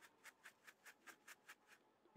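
Very faint, rhythmic rustling of lettuce seeds and chaff being bounced in a plastic sifter, about five soft strokes a second.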